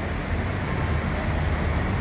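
Steady low rumble of outdoor street noise, like distant road traffic, with no distinct events.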